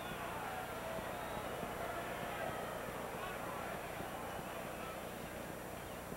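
Steady low murmur of a ballpark crowd, with indistinct voices from the stands.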